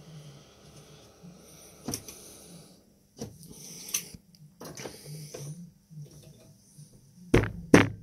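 Scattered clicks and light knocks from a stripped power-tool battery pack of 18650 cells and hand tools being handled on a workbench, with one louder thump shortly before the end.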